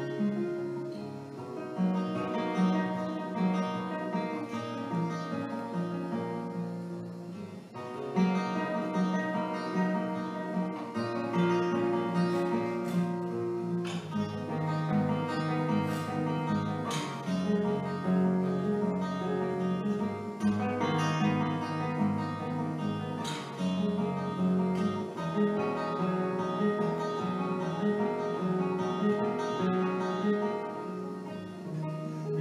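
Solo acoustic guitar played as an instrumental passage: plucked notes over a steady bass line, with a brief lull about eight seconds in before it picks up again.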